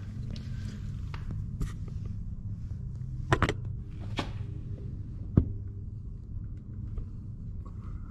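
A GoPro being handled and moved around an aircraft engine bay, with a few sharp knocks and scrapes against it, over a steady low hum.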